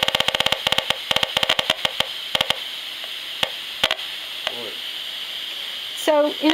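The HF 35C RF analyzer's built-in speaker crackles in a rapid flurry of clicks, its rendering of the nearly continuous pulsed transmissions from a bank of smart meters. After about two and a half seconds the clicks thin out to a few scattered ones over a steady hiss.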